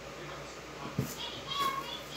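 A plastic bottle is set down into a cardboard box with a single short knock about a second in, followed by a child's faint voice.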